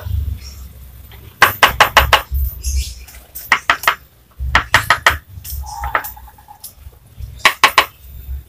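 A hand mallet tapping a ceramic tile to bed it down. The knocks come in short runs of three to five quick, sharp taps with pauses between.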